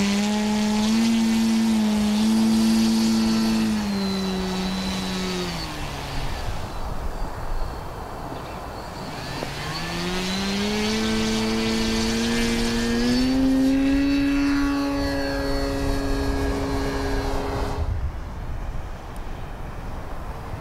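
Graupner Husky 1800S model plane's electric motor and propeller whining as it taxis: the pitch steps up, falls away low, then climbs again and holds high. It cuts off abruptly near the end, leaving a fainter noise.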